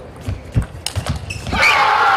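Table tennis rally: players' feet thud on the court floor and the ball clicks sharply off bat and table a couple of times. About a second and a half in, a loud shout breaks out as the point ends.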